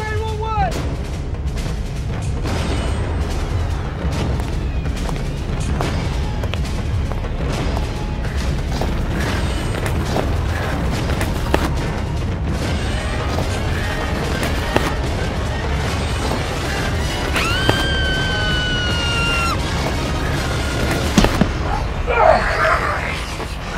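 Horror film soundtrack: a dense, low rumbling score with booms and many sharp hits. A short gliding cry comes at the start, and a long, high held tone that falls slightly sounds for about two seconds near the end.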